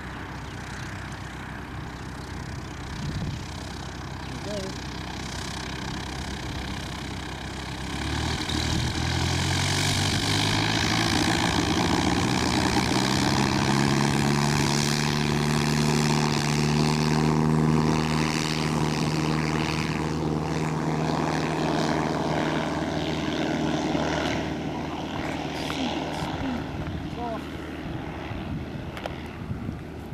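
Light tow plane's propeller engine running low, then opened up to full power about eight seconds in for an aerotow takeoff, its pitch rising a little as it winds up. It holds steady, then gets quieter after about 24 s as the plane pulls away down the runway with the glider.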